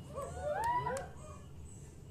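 Several audience members whooping at once, overlapping rising-and-falling calls lasting about a second.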